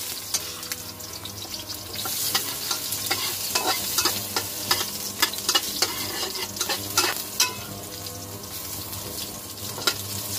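Garlic and ginger sizzling in hot oil in a wok, stirred with a metal spatula whose scrapes and taps on the pan make sharp clicks. The sizzle grows louder about two seconds in, and the clicks come thickest from then until about seven and a half seconds in.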